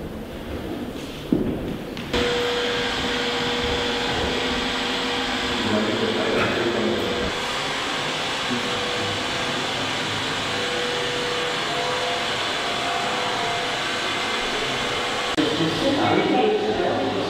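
A corded electric power tool starts abruptly about two seconds in and runs steadily with a hum while it cuts a circle through wooden floorboards, stopping shortly before the end.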